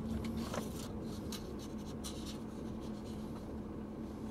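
Inside a car's cabin with the engine idling: a steady low hum and rumble, with faint scratchy rustles and small clicks over it.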